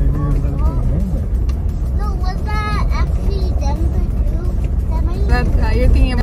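Steady low rumble of a car driving, heard from inside the cabin, with people talking over it now and then.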